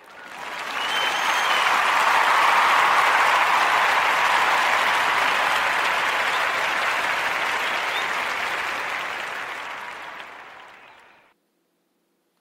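Recorded audience applause played as a segment bumper. It swells in over about two seconds, slowly tapers, and fades out to silence shortly before the end.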